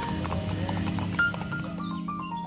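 Horses' hooves clip-clopping at a walk on a brick-paved path, mixed with background music of held melodic notes.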